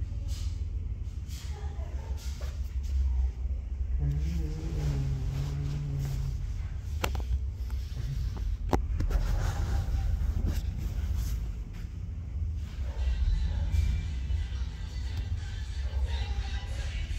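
Several film opening soundtracks playing over one another from computer speakers: deep rumbling score with a held low note a few seconds in, and two sharp hits about halfway through.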